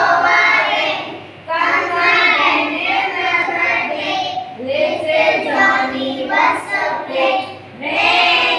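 A group of young children singing together, in phrases with short breaks about a second and a half in and near the end.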